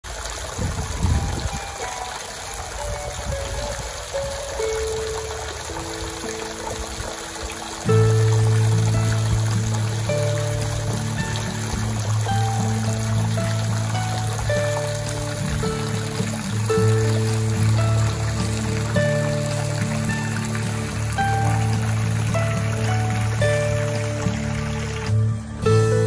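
Water trickling from a spring, with harp music entering about four seconds in. A low, steady bass part joins at about eight seconds, and from then on the music is the loudest thing.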